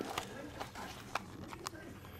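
Handling noise from a camera being moved and turned around: a few light, irregular clicks and knocks.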